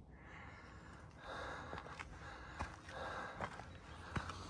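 Faint, heavy breathing of a hiker catching his breath after a steep climb: two slow breaths, with a few small clicks.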